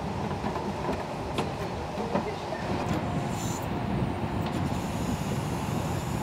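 Steady low rumble with a few light knocks scattered through it.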